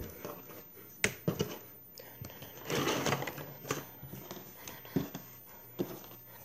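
Handling noises as containers are moved about on a counter: a few light knocks and bumps, with a rustling stretch in the middle.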